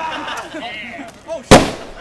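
A single loud, sharp bang about one and a half seconds in, dying away quickly: an airsoft pyrotechnic grenade going off.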